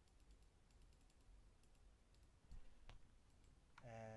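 Faint, scattered clicks of a computer mouse button over near silence, as a word is drawn stroke by stroke in a paint program.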